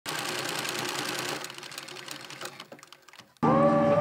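Rapid mechanical clicking clatter of a film projector sound effect, thinning out and fading over about two seconds. Guitar music cuts in loudly about three and a half seconds in.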